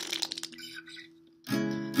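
Acoustic guitar chord ringing out and fading almost to silence, then a fresh strummed chord about a second and a half in.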